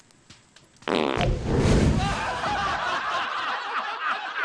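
A long, loud fart about a second in, its pitch sagging as it goes, followed by a group of people breaking into laughter.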